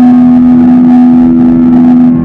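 Live rock band playing an instrumental passage with no vocals, an electric guitar holding one long distorted note over the drums.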